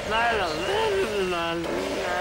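A cartoon character's voice making one drawn-out, wordless angry grumble that wavers and slides lower in pitch toward the end.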